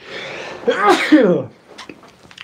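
A man sneezes once: a drawn-in breath, then a loud sneeze a little over half a second in that falls away by about a second and a half.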